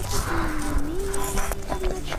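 Close-miked chewing of crispy fried chicken: many quick crunches and clicks. A long wavering hum runs under them, dipping and rising in pitch.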